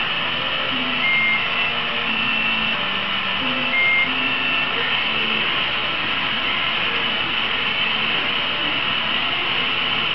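Hand-held gas torch on a cylinder, its flame hissing steadily while it melts glass rods. A few short tones sound in the first half.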